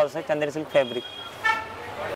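A short, faint horn toot about one and a half seconds in, a steady pitched note under the talking, typical of a vehicle horn from street traffic.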